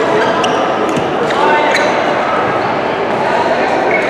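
Badminton play in a large, echoing sports hall: sharp racket strikes on the shuttlecock and short high squeaks of court shoes on the floor, over a steady hubbub of voices from the surrounding courts.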